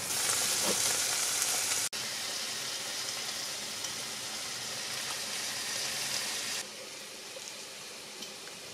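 Diced onion and turkey liver frying in oil in a pan: a steady sizzle that breaks off for an instant about two seconds in and turns quieter near the end.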